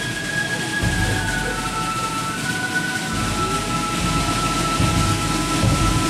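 Marching band playing a slow tune in long, held notes, over a low rumble.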